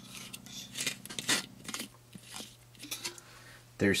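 Screw lid being taken off a clear plastic tube by hand: a scatter of small clicks and scrapes of plastic threads and handling, over a faint steady low hum.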